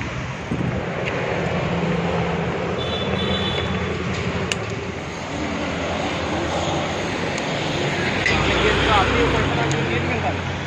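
Road traffic: vehicle engines running steadily along a city road, with a bus passing close near the end, its low engine rumble swelling and then falling away.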